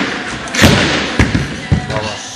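Spring-loaded jumping stilts landing on a sports-hall floor with a heavy thud about two-thirds of a second in, then several lighter knocks as the jumper bounces on. The impacts echo in the large hall.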